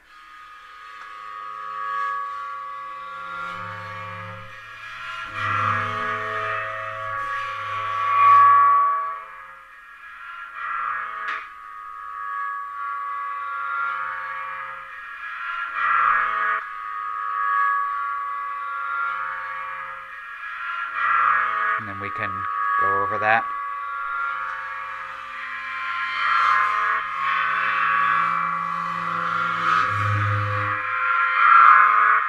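Cymbal sounds fed through a Boss DD-6 digital delay pedal set up as a phrase loop: a ringing metallic motif that swells and comes back around every few seconds, the seam audible where the loop restarts. A few quick clicks with sliding pitches cut in past the middle.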